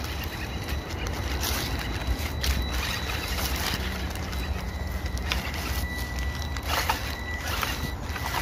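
Small electric 1/18-scale RC crawler truck driving over wet fallen leaves: crackling leaf rustle under its tyres over a steady low rumble. A faint high motor whine grows a little stronger about five seconds in.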